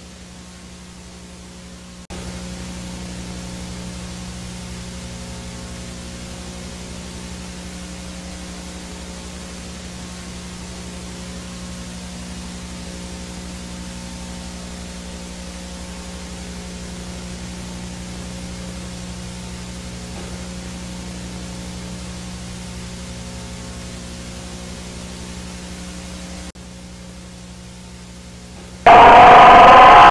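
A steady electronic drone of several low held tones with a hiss over it, preceded by a fainter low buzz. Near the end it is cut by a sudden, very loud, distorted blare lasting about a second.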